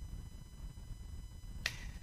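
A pause in the talk: low studio room rumble with a faint steady high-pitched electronic whine, and a short soft hiss near the end.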